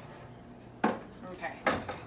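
Two sharp knocks of a frying pan and metal stove grates on a gas cooktop, a little under a second apart.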